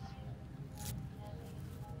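Quiet room tone with a faint steady hum, and one brief rustle about a second in as work gloves are picked up.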